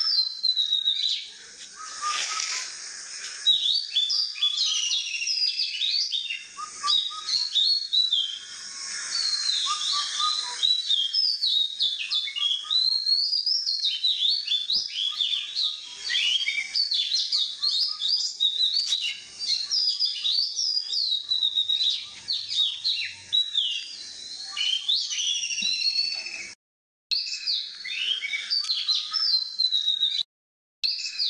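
Many birds chirping and whistling at once in a dense, continuous chorus of quick high chirps, with a brief gap near the end.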